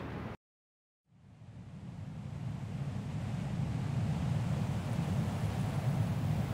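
The sound cuts to dead silence for under a second, then a steady low rumble of background noise fades in over a couple of seconds and holds.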